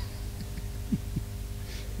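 Steady low electrical hum from the church sound system in a pause between words, with three faint short low blips about half a second and a second in.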